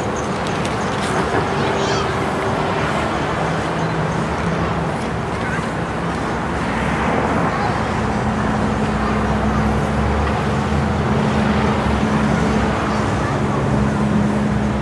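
Road traffic running steadily past a street intersection, with a vehicle engine's low hum rising and holding from about halfway through.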